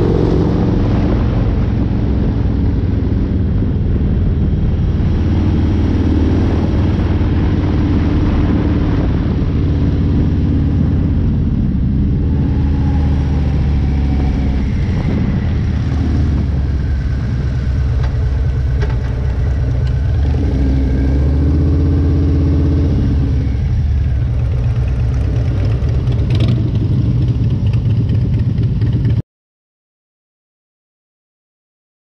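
Harley-Davidson bagger's V-twin engine running under way on a winding climb, its engine speed rising and falling through the bends. The sound stops abruptly near the end.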